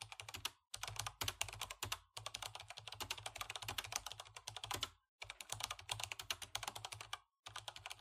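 Rapid typing on a computer keyboard: fast clattering keystrokes in runs of one to three seconds, broken by brief pauses.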